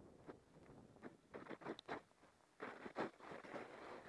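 Snowboard scraping and chattering over rippled, crusty snow in short irregular bursts, with faint wind noise.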